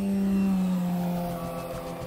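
A loud low hum that sinks slightly in pitch over the first second and a half, mixed with background music.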